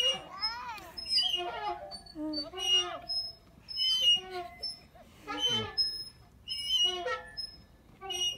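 A playground bucket swing squeaking with each pass as it swings back and forth, in short pitched squeaks repeating about every second and a half.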